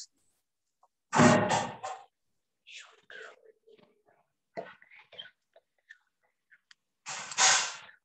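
A person's voice whispering in two short bursts, one about a second in and one near the end, with faint small sounds between.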